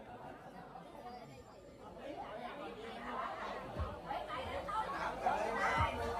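Faint chatter of several voices at once, starting almost silent and growing steadily louder over the last few seconds.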